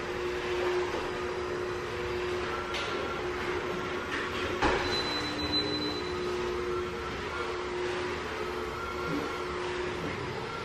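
Corded electric steam mop running as it is pushed across the floor: a steady hum with hiss, and a single knock a little under five seconds in.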